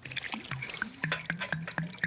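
Root beer being sipped and swallowed from aluminium cans close to studio microphones, with small wet mouth clicks.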